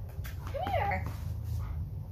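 Golden retriever puppy whining: one short, high whine about half a second in that rises and then falls in pitch.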